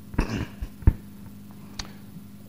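A few short, soft knocks and rustles from a handheld microphone being handled as the lecturer moves, over a faint steady electrical hum.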